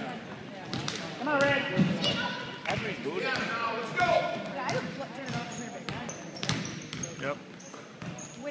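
Basketball being dribbled on a hardwood gym floor, a series of bounces, with voices calling out over it.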